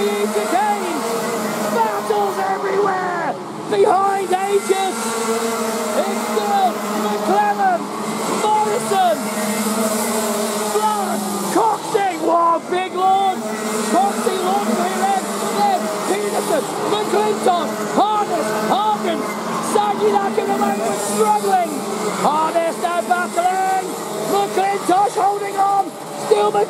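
A pack of Rotax Max 125 cc single-cylinder two-stroke kart engines racing on the circuit. Many overlapping engines rise and fall in pitch as the karts brake for corners and accelerate out of them.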